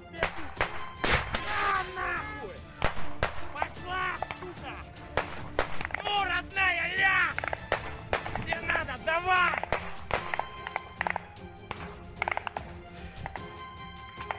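Gunfire in a firefight: a string of sharp shots at close range, the loudest about a second in.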